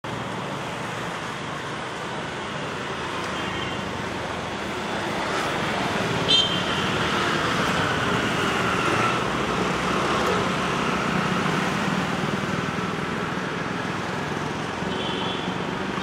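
Road traffic passing, a steady rush of engines and tyres that swells about a third of the way through. A short, sharp, high-pitched sound comes about six seconds in, and brief high tones come near the start and near the end.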